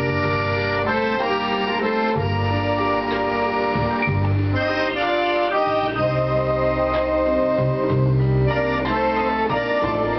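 An accordion playing a tune without pause, held melody notes moving above low bass notes that change every second or so.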